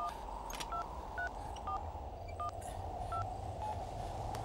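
Touch-tone phone keypad being dialed: seven short dial-tone beeps at uneven intervals, over a steady low background drone.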